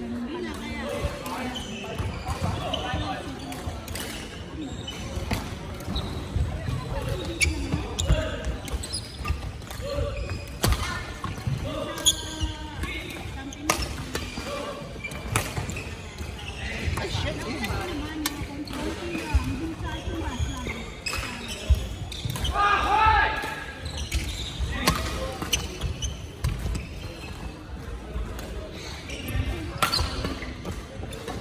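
Badminton rally in a large hall: sharp racket strikes on the shuttlecock at irregular intervals, with footfalls thudding on the wooden court floor. A voice calls out briefly about three-quarters of the way through.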